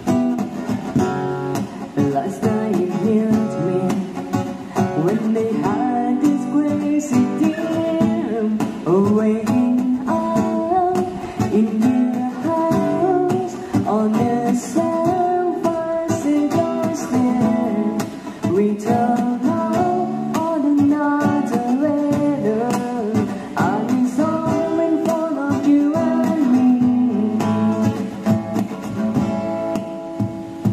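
A woman singing into a microphone over a man's acoustic guitar accompaniment: a live vocal-and-guitar duo performing a song.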